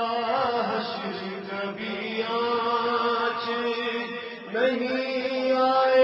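A man chanting devotional verse in a melodic voice, holding long notes with a slight waver. The voice comes in suddenly at the start and breaks briefly about four and a half seconds in before carrying on.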